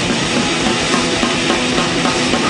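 Crust / d-beat hardcore punk recording: distorted guitar and distorted bass over a drum kit, dense and loud throughout.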